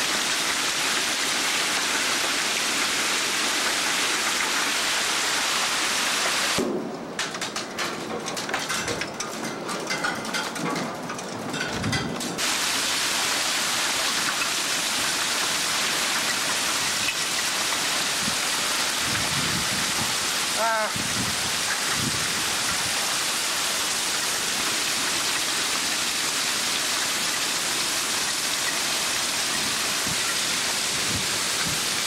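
Heavy thunderstorm downpour, a loud steady hiss of rain on the ground and trailers. It goes quieter and duller from about seven to twelve seconds in.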